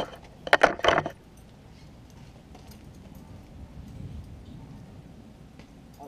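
Metal rings and buckle of a leather breast collar jingling and clinking during the first second as the strap is adjusted at its D-ring, then only faint background noise.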